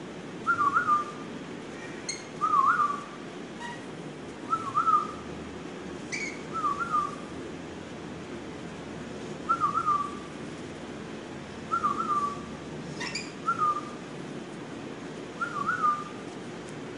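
A short whistled phrase that wavers up and down, repeated about eight times, every two seconds or so, with a few brief sharp chirps from pet lorikeets in between.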